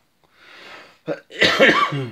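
A person coughing: a faint breath, then a short hack and a loud harsh cough about a second and a half in. The cough comes from a cold; the speaker says he is sick.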